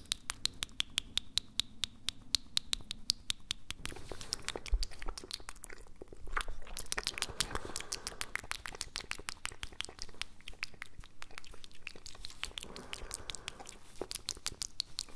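Close-miked mouth and tongue sounds for ASMR: quick wet clicks and smacks, about five a second at first, growing denser and wetter around the middle.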